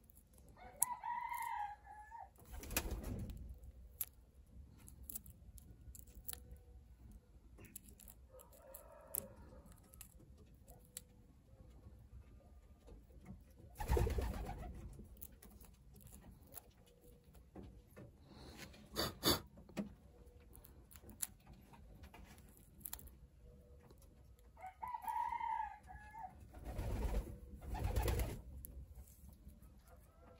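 Pigeons calling a few times, short cooing calls, over soft clicks and rubbing from fingers picking at an eggshell; a few louder knocks and handling bumps stand out midway and near the end.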